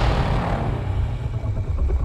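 Deep, steady low rumble from the trailer's sound design, with the top end of a loud boom fading away in the first half-second.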